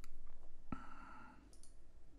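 A computer mouse click, one sharp click about three-quarters of a second in, with a fainter click near the end.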